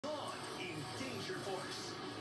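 Television commercial soundtrack playing from a TV set: voices over background music, heard through the set's speaker in the room.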